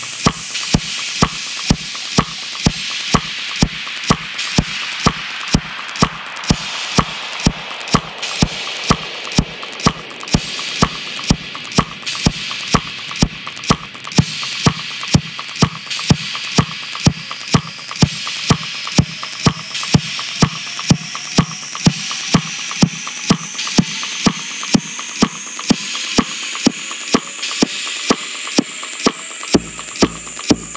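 Minimal tech house track: a steady four-on-the-floor electronic kick drum at about two beats a second over a hissing noise layer, with a slow rising synth sweep through the second half and deep bass coming in at the very end.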